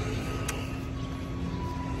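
Steady low hum of motor traffic, with one sharp click about halfway through.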